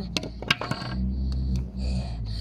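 A wooden hurley dropped onto a tarmac road, landing in a short clatter of a few sharp knocks within the first second.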